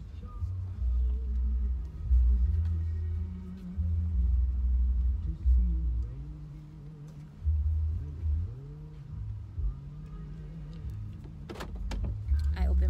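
A car backing slowly into a driveway, heard from inside the cabin: uneven low rumbling that comes in surges, with the engine's pitch rising and falling.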